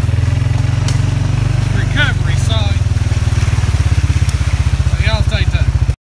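A four-wheeler (ATV) engine running steadily while it is ridden, a deep, fast, even putter.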